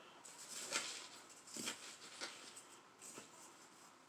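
Faint rustling and scraping of potting soil mixed with vermiculite as fingers and a small hand tool work it around seedlings in a plastic pot, in a few short separate scrapes.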